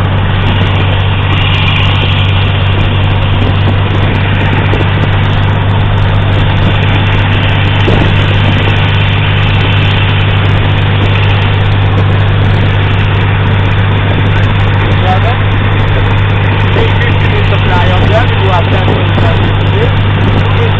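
Light aircraft's engine and propeller running steadily, heard from inside the cabin with the door open, a constant low hum under a noisy rush.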